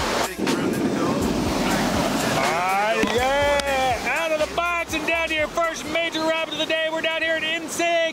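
Rushing whitewater and wind buffeting a helmet camera's microphone. From about two and a half seconds in, a voice calls out in drawn-out, pitched, wordless sounds, first sliding in pitch and then held in short repeated notes.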